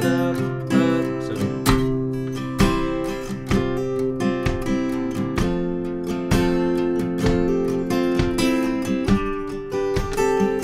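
Acoustic guitar with a capo, strummed in a steady, natural rhythm of full strums, its chords changing every few seconds.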